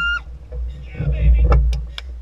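Wind rumbling on the microphone over open water, with a short high rising squeal that cuts off just after the start and a quick run of sharp clicks, about four a second, in the second half.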